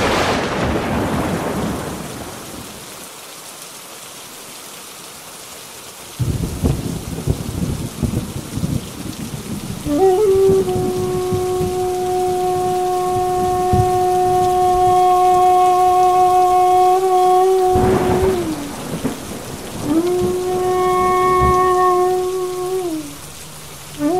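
Heavy rain pouring, with a thunderclap right at the start that dies away over about two seconds and low rolling thunder from about six seconds on. From about ten seconds a long steady pitched tone is held over the rain, breaks off with a falling end, and comes back near the end.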